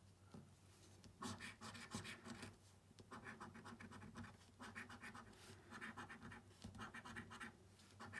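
A coin scratching the coating off a lottery scratchcard: faint, in several short spells of quick strokes with brief pauses between them.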